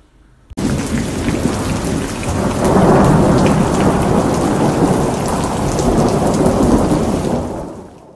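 Sound effect of heavy rain with a rolling thunder rumble. It starts abruptly just after half a second in, swells about three seconds in, and fades out at the end.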